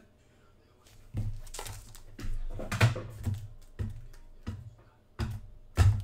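A run of irregular knocks, clicks and rustles from cards and a hard plastic graded-card slab being handled and set down on a tabletop, the loudest knock near the end.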